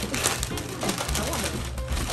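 Wrapping paper being torn and crinkled off a gift box, a dense crackle of many small rustles, over quiet background music.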